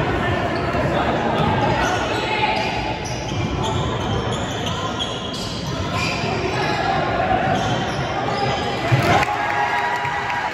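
A basketball bouncing on a hardwood gym floor during play, with spectators talking, in a gymnasium. There is a louder sharp knock about nine seconds in.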